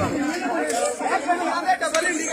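Several people talking at once: indistinct, overlapping chatter.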